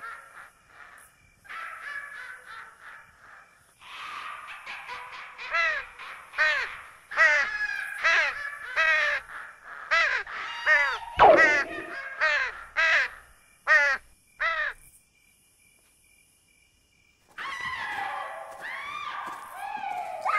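Crows cawing, a harsh call repeated about once a second, growing louder and then stopping. After a short quiet gap a different sound starts near the end.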